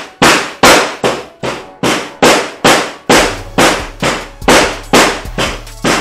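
Claw hammer striking a hard-packed sand dinosaur dig egg over and over, about two and a half sharp blows a second.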